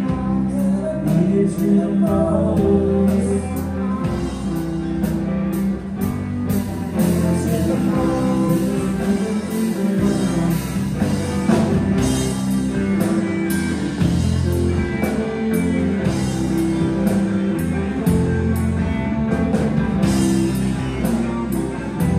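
Live garage rock band playing: electric guitars, bass and drum kit with a steady beat, and a singer's voice over them.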